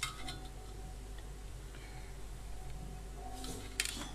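Faint, light metallic clicks and taps as a soldering iron and a wire are handled against the steel bracket of a dome-light housing: one click at the start and a few more about three and a half seconds in, over a steady low hum.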